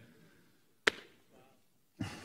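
A single short, sharp tap about a second in, with the room otherwise quiet around it.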